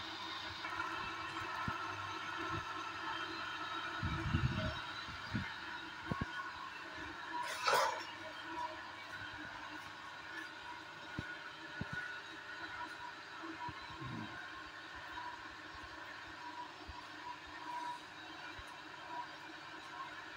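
Three-phase induction motor running steadily off a soft starter with no load on its pulley, a steady hum and whine of several tones. Scattered knocks and a brief noisy burst about eight seconds in.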